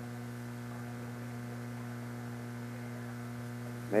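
Steady electrical mains hum in the radio broadcast audio: a low drone with a few fainter higher overtones, unchanging throughout.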